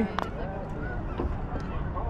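Silver perch croaking while held out of the water, several short croaks, with a sharp click just after the start.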